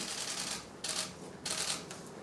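Press photographers' camera shutters firing in three quick bursts of rapid clicks, each less than half a second long.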